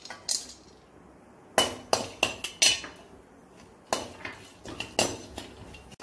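A steel slotted spoon clinking and scraping against a metal kadai while stirring and scooping chopped cashews and almonds fried in ghee: a scattered series of sharp clinks, about seven, with quiet between.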